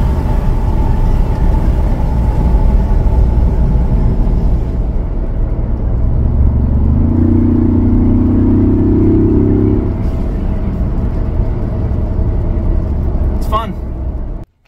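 Ford Bronco's turbocharged engine and road noise heard from inside the cabin with the window down, a steady rumble. About seven seconds in, a louder, steady engine note comes in for about three seconds, as under acceleration.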